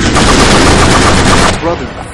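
Rapid machine-gun fire in one long, loud burst that cuts off suddenly about a second and a half in, followed by a brief voice.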